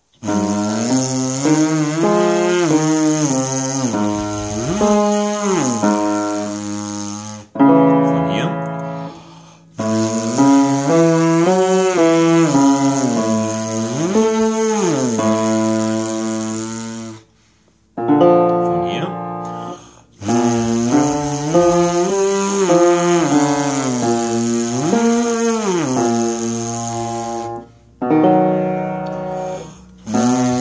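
A tuba player buzzing his lips through a range exercise with piano accompaniment. Each run steps up a triad to the sixth and back down, then slides up to the octave. The runs come three times, each a little higher, with a short piano passage between them.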